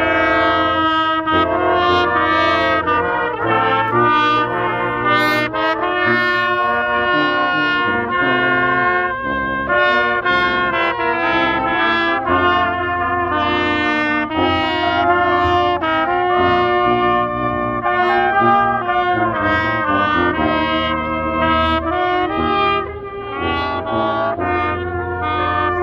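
A small brass band of trumpets and euphonium playing a tune in harmony, with notes held and changing every second or so.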